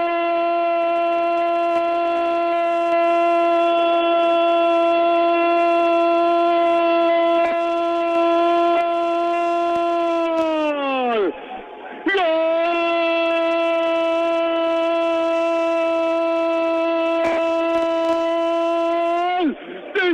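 Football radio commentator's goal cry: one long shouted "gol" held at a single steady pitch for about ten seconds, sliding down as his breath runs out. After a quick breath it is held again for about seven more seconds and falls away at the end.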